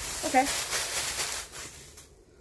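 Plastic rustling and crinkling as a movie case is taken out of a shopping haul and handled, lasting about a second and a half before dying away.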